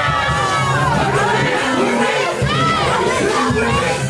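Loud crowd of partygoers shouting and cheering over club music with a repeating bass beat.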